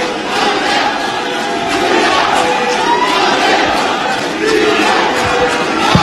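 A crowd of many voices shouting and calling out at once, loud and fairly steady, with no single voice standing out.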